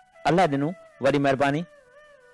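Soft background music with long held notes, broken by two short, drawn-out voice-like sounds about half a second each in the first half.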